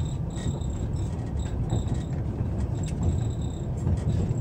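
Passenger train carriage rolling along the track, heard from inside as a steady low rumble, with a high, pulsing chirp that comes and goes over it.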